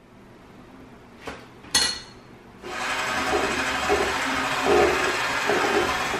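Kitchen work: a knock and a ringing clink of kitchenware, then a loud, steady rushing noise that starts a little under three seconds in and runs on.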